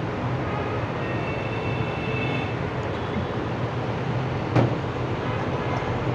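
Steady low background rumble with hiss, and one short knock about four and a half seconds in.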